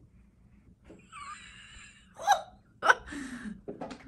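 A woman's short, gasping bursts of laughter, three of them in the second half, after a faint wavering high sound about a second in.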